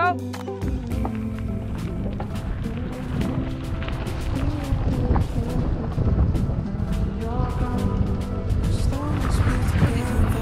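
Wind rushing over the microphone and mountain-bike tyres rolling over a gravel dirt track as a harnessed dog pulls the bike off at speed, with rattles and small knocks from the bike.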